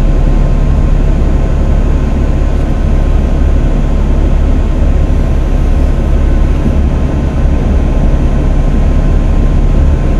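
Car cabin noise while driving: a steady low rumble of engine and road noise.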